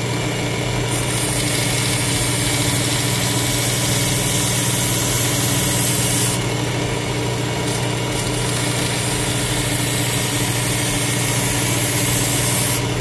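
Work Sharp Ken Onion Edition sharpener with its blade grinding attachment running with a steady motor hum, while a Damascus steel straight razor is honed on its abrasive belt. The blade's contact with the belt adds a high grinding hiss in two long passes, with a short break about six seconds in.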